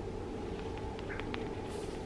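Quiet room noise with a low steady hum and a few faint soft clicks around the middle, from makeup being handled and a sponge being picked up.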